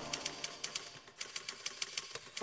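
Typewriter keys striking in a quick run, about seven clacks a second, with a brief pause about a second in.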